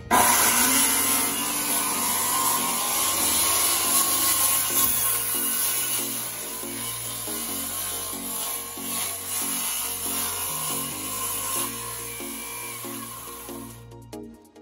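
Compact corded circular saw (a Dremel saw) cutting through a fiberglass boat deck, starting abruptly and running steadily, a little lighter in the second half before it stops near the end. Background music with a steady pulse plays underneath.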